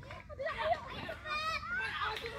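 Several children's high-pitched voices calling and chattering over one another while playing, louder from about half a second in.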